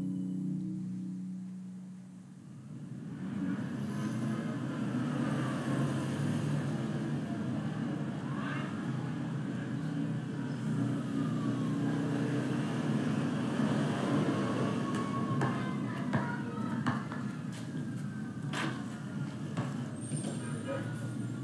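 A soft, sustained music tone fades out over the first two seconds, then city street ambience comes in: steady traffic noise with slow rising and falling wails of a distant siren, and a few sharp knocks near the end.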